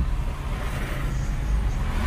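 Steady low rumble of engine and road noise, heard from inside the cabin of a Nissan Kicks in city traffic.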